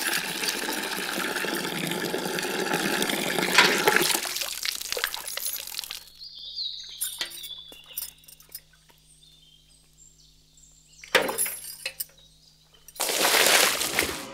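Water running hard from a tap into a metal vessel for about six seconds, then stopping. Near the end comes a short, loud rush of water, as a bucket of water is poured out.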